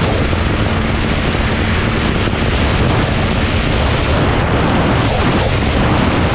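Dirt bike engine running at a steady cruise on a gravel road, buried under heavy wind rush on the helmet-mounted microphone.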